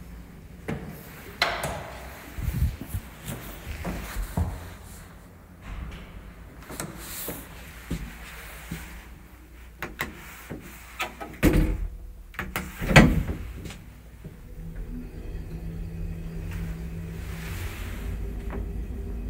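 Asea Graham traction elevator modernised by Kone: a scatter of clicks and knocks, then two loud door thuds a little past the middle as the doors shut, after which the cab sets off with a steady low hum from the traction machine.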